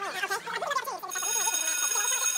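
Young men talking, then about a second in a steady high ringing tone begins and holds.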